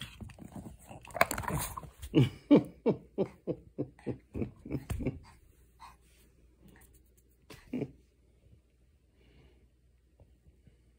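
Pomeranian growling and snarling in a run of short pulses, about three a second, with one more near the end: a warning while a hand reaches for the treat toy he is guarding.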